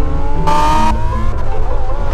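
Lamborghini Huracán Evo's V10 engine revving under acceleration, its pitch climbing steadily, with a short hiss-like burst of noise about half a second in.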